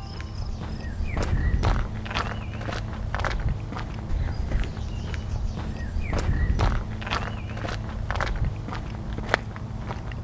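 Footsteps crossing a wooden footbridge, irregular sharp steps, with a few short bird chirps in between.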